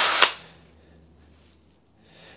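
Cordless drill with an 8 mm bit drilling old shaft glue out of a fairway wood head's hosel. It stops about a quarter of a second in, ending with a sharp click.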